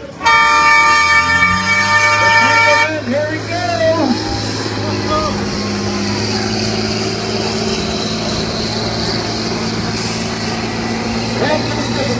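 An air horn blasts for almost three seconds, then the monster 6x6 school bus's engine runs steadily as it pushes through the mud pit, with passengers shouting over it.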